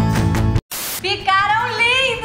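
Background music that cuts off about half a second in, a brief burst of hiss, then a woman's voice with a wavering pitch and no clear words.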